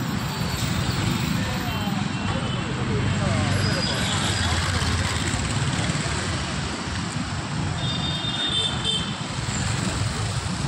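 Busy road traffic: a city bus, scooters and motorbikes running past close by, with steady engine and road noise, and voices in the background.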